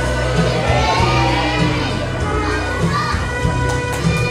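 Music with a steady bass line, with a crowd of children shouting and cheering over it.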